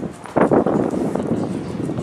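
Outdoor street noise with footsteps on a paved sidewalk, irregular, jumping louder about half a second in.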